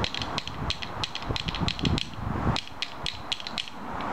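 Two pairs of Triskele rhythm bones, one pair in each hand, clacking in quick rhythmic runs of sharp clicks, several a second.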